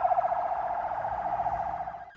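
Ambulance siren sounding, a fast warbling tone held around one pitch, which stops at the end.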